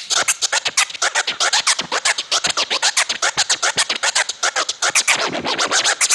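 Vinyl record scratched by hand on a DJ turntable: a fast, even run of short back-and-forth scratches, roughly eight to the second. It is the simple scratch pattern being demonstrated for beginners to copy.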